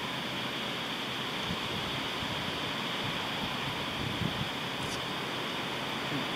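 Steady outdoor background hiss with no other clear sound, plus a couple of faint soft sounds about a second and a half in and about four seconds in.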